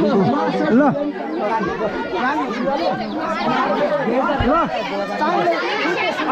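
Crowd chatter: many people talking over one another at once, with no single voice standing out.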